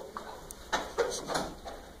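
Faint, indistinct voice sounds, a few short syllables, with a light click about half a second in.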